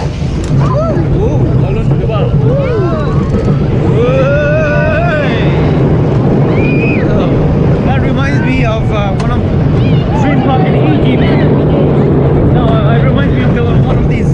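Small powered family roller coaster train running along its track with a steady low rumble. Riders' voices call out over it, with a long drawn-out call about four seconds in.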